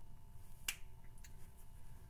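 One sharp plastic click from a marker being handled, followed by a couple of fainter ticks.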